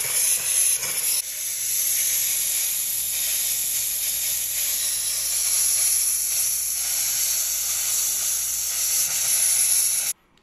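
A steamer hissing steadily as it blows steam into the air, stopping abruptly at the very end.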